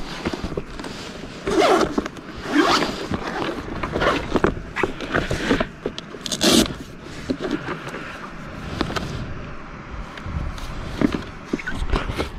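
A zip on a padded laptop sleeve pulled open in several short strokes, with scraping and rustling as the sleeve and the laptop inside are handled.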